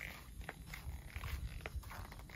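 Faint, high-pitched mews of kittens, with a few soft clicks mixed in.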